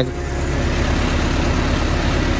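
Tractor engine running steadily with a low throb while its tipping trolley is raised to unload.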